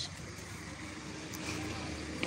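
A motor vehicle's engine running nearby: a low, steady hum that gets a little louder about a second and a half in.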